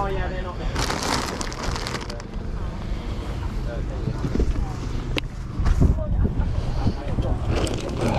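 Wind buffeting the microphone with a steady low rumble, and faint voices in the background; a brief rustle about a second in as toys are handled.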